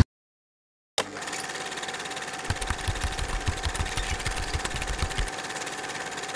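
An engine running steadily, a drone with a constant whine that starts abruptly after a second of silence. A run of low, uneven thumps sits in the middle.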